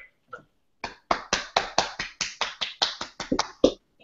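One person clapping their hands, about fifteen quick claps at roughly five a second, heard over a video call.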